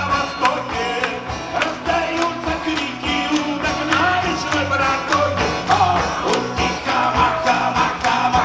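Live song: a man singing to a strummed acoustic guitar, with a steady rhythmic beat.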